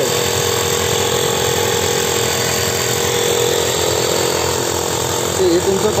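Small portable electric air compressor of the handheld tyre-inflator type running steadily with an even hum, pressurising a diaphragm pressure gauge to about 2 kg/cm².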